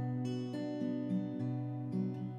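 Acoustic guitar strummed gently, its chords left to ring with a new chord change about every half second.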